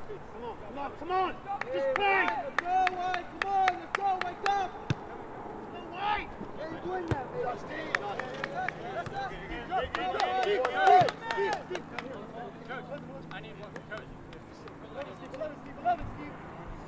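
Players and sideline voices shouting across a soccer field, calls rising and falling in short bursts, with short sharp snaps mixed in, thickest between about two and five seconds in and again around ten to eleven seconds.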